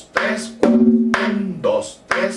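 Dominican tambora played with a stick in one hand and the bare hand on the other head, in a repeating merengue pattern of about four strokes in two seconds. The stroke near the middle is an open tone that rings on for about a second, and the last is a short, higher-pitched hand stroke.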